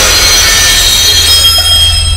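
Intro sound effect: the fading tail of a glass-shatter hit, with several high ringing tones held over a deep, steady drone.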